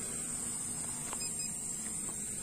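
Steady high-pitched insect chorus, crickets or cicadas, with a faint low hum underneath and a single small click about a second in.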